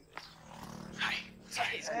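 A man's voice calling out a loud greeting near the end, over a low steady hum and street background.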